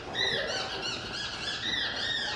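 A squeaky toy being squeezed over and over: a run of short high squeaks, about two or three a second.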